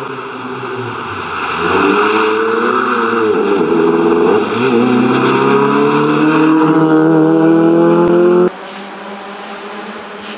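Citroen C2 rally car's engine approaching hard under power: the note climbs, drops briefly about three to four seconds in, then rises steadily as it accelerates past. It cuts off abruptly about eight and a half seconds in, leaving a quieter hiss.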